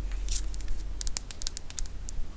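Long fingernails tapping and clicking on the plastic barrel of an eyeliner pen: a rapid run of about ten sharp ticks starting about a second in.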